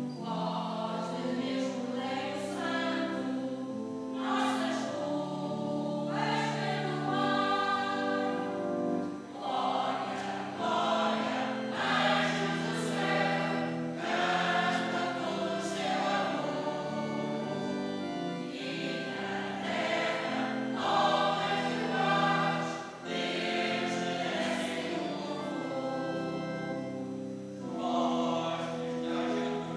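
Mixed choir of men's and women's voices singing a hymn in harmony, dropping briefly between phrases twice.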